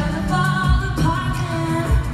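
Live country-pop concert: a woman singing lead into a microphone over a full band with drums.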